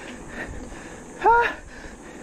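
Rushing wind and tyre noise from a mountain bike rolling along a paved road, with one short rising "ha" from the rider about a second in.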